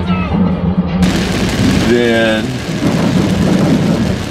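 Music with a steady low note cuts off about a second in, giving way to heavy rain beating on a car's windshield, heard from inside the cabin. A short voice sounds briefly about two seconds in.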